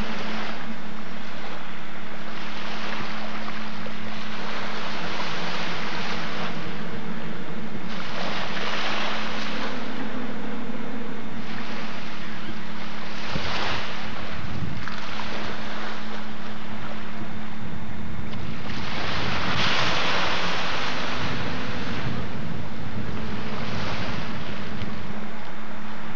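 Rushing noise that swells and fades every few seconds, over a steady low hum.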